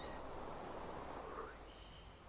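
Crickets chirping steadily in a background nature soundscape, over a soft rushing noise that eases off about one and a half seconds in.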